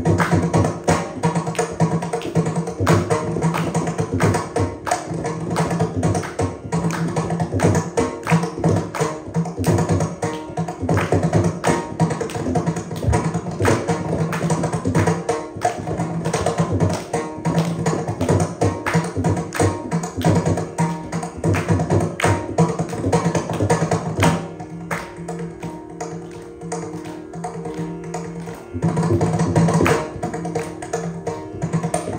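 Mridangam solo in adi tala: fast, dense strokes over a steady drone. The drumming softens and thins out from a little before the end, then comes back loud just as it closes.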